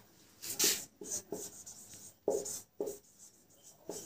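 Marker pen writing on a whiteboard: a series of short, separate strokes as words are written out.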